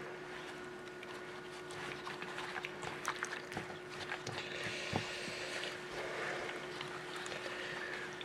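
Wet fabric being kneaded and pressed down by gloved hands in a metal bowl of dye liquid: faint, irregular squishing and sloshing with small clicks.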